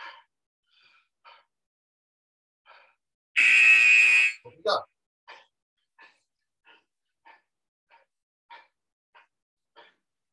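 A man's quick, heavy exertion breathing, a short puff about every 0.6 s, as he does fast lying-down knee-drive sprinters. A bit over three seconds in, a loud steady buzzing tone cuts in for about a second, with a short low vocal sound right after it.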